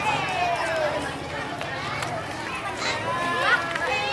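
A crowd of children's voices: many high voices calling and chattering at once, overlapping throughout, from a group of schoolchildren walking in procession.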